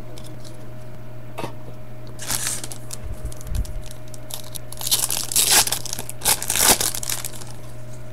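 A foil trading-card pack wrapper being torn open and crinkled by hand. A short burst of crackling comes about two seconds in, and a louder, longer run of tearing and crinkling follows from about five to seven seconds.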